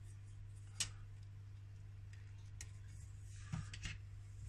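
Metal rods and plastic frame pieces of a fish net breeder clicking and knocking as they are handled and fitted together: one sharp click about a second in, a fainter one midway, and a few knocks near the end, over a steady low hum.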